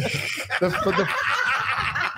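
Several men laughing at once, their chuckles and snickers overlapping in a continuous stretch of laughter.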